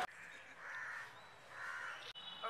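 Two faint, harsh caw-like bird calls, about a second apart.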